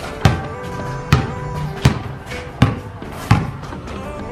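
A basketball dribbled on a concrete court: five sharp bounces, slightly irregular, roughly three-quarters of a second apart, over steady background music.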